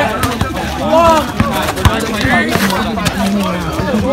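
Several voices of players and onlookers calling out during an outdoor pickup basketball game, with a few short knocks from the basketball bouncing on the asphalt court.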